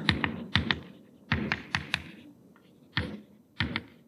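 Chalk writing on a blackboard: clusters of quick, sharp taps and short strokes, with brief quiet gaps between them.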